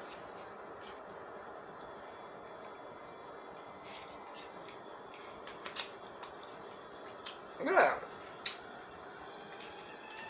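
A few light, scattered clicks of a metal fork against a paper plate as spaghetti is stirred, over a low steady background hiss.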